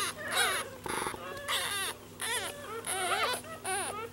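One-week-old Yorkie poo puppy crying while being held up in a hand: a string of short, high-pitched squeals and whimpers that rise and fall in pitch, repeating throughout.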